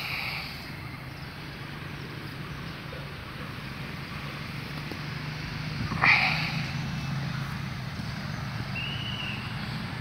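Outdoor ambience: a steady low hum of distant traffic, with one loud bird call about six seconds in and a short chirp near the end.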